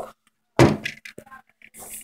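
Back cover of a 1950s Bell & Howell Filmo cine camera being unclipped and pulled off: a thunk about half a second in, then a few small clicks and a short rattle near the end.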